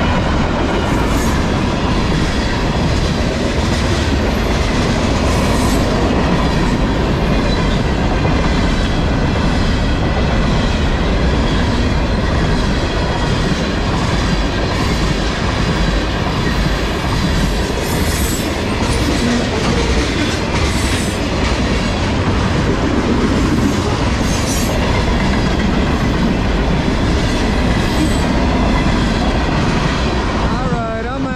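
Freight cars of a long CSX manifest train, gondolas and tank cars, rolling steadily past at a grade crossing, with the continuous rumble and clickety-clack of steel wheels over the rail joints. A few brief high wheel squeals come in the second half.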